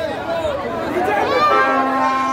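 Crowd of people talking and shouting over one another, with one voice holding a longer call in the second half.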